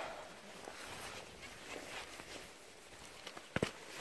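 Spade cutting into grassy turf and levering up a plug of soil: faint crunching and scraping, with a sharp click about three and a half seconds in.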